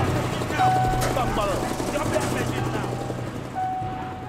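Indistinct voices of people talking over a steady low mechanical hum.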